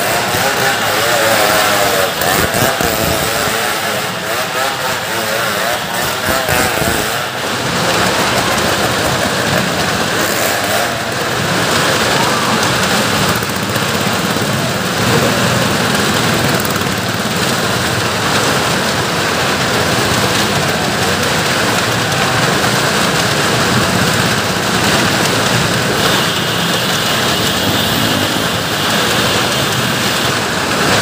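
Cars and motorcycles circling on the vertical wooden wall of a 'well of death' stunt drum, their engines running hard together in a loud, continuous din.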